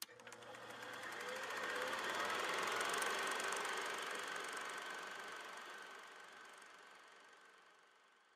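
Title-animation sound effect: a noisy buzz with rapid fine ticking that swells for about three seconds, then slowly fades away.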